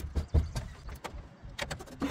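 Scattered clicks and light knocks from a folded Aventon Sinch e-bike being handled, its frame and parts tapping and rattling, a few of them in quick succession.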